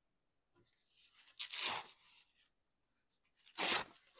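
A magazine page torn along the edge of a metal ruler, in two short rips about two seconds apart.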